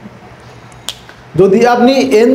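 A single sharp click about a second in, then a man starts speaking.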